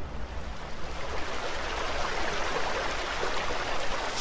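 Shallow river running over rocky rapids: a steady rush of water that builds within the first second.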